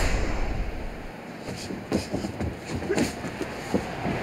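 Boxing-ring ambience: a steady background hiss with a few short thuds from the fighters, about two, three and nearly four seconds in.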